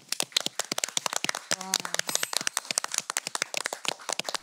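A small group of people applauding: quick, irregular, overlapping hand claps.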